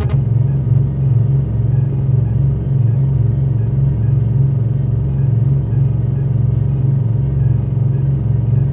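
Electronic drum and bass jam in a breakdown: the drums drop out and a deep synthesizer bass line carries on alone, pulsing in a repeating pattern.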